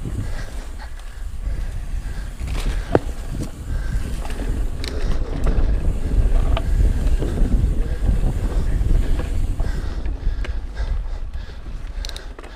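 Ibis Mojo HDR650 mountain bike riding fast down a dirt singletrack: a steady low rumble of air and tyres on dirt, with scattered rattles and knocks from the bike over bumps. It gets louder about halfway through as speed builds, then eases near the end.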